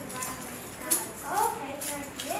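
Children's voices speaking indistinctly on stage, with a brief sharp sound about a second in, the loudest moment.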